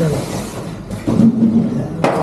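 Indistinct voices of several people talking at once, with one voice holding a sound briefly about a second in.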